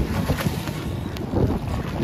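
Wind buffeting the microphone at water level, over splashing and lapping water as a wing foiler drops off her board into the water.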